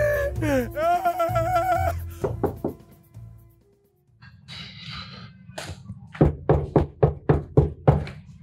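A man's pained crying out over music, then after a brief hush a quick run of about seven knocks on a panelled door, some four a second, loud and sharp.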